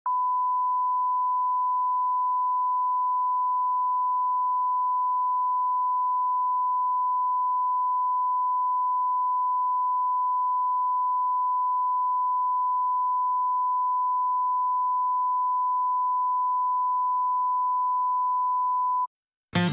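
A television station's 1 kHz line-up test tone, one pure steady whistle-like note held at an unchanging level. It is the audio test signal broadcast with colour bars while the channel is off air for technical maintenance.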